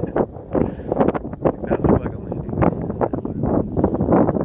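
Wind buffeting the microphone in uneven gusts, a rough noise broken by many sharp irregular blasts.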